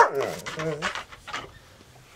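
An Irish setter barks and whines briefly in the first second, then dies away.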